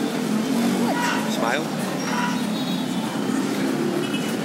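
Café background of voices over a steady low hum, with one voice sliding up and down in pitch about a second and a half in.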